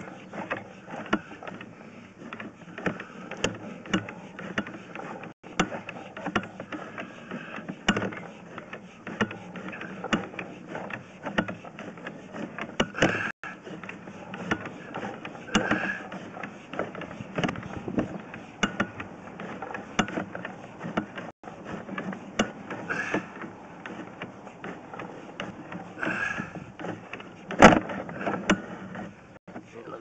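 Drain inspection camera's push rod being fed off its reel and along a drain pipe: a continuous clatter of irregular clicks and rattles, with one sharp, louder click near the end.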